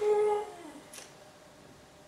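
A short wordless vocal sound from a person, a hum held on one pitch for under half a second, then sliding down in pitch and fading.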